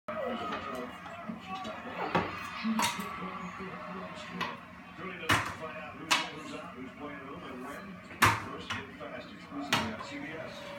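A wooden stick knocking against a metal frame, about eight sharp clacks at uneven intervals, the loudest late on.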